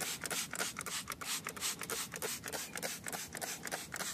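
A rag being rubbed hard over an alloy wheel rim in quick repeated scrubbing strokes, wiping off glass cleaner and dirt before painting.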